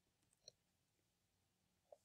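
Near silence: room tone, with two very faint short clicks, one about half a second in and one near the end.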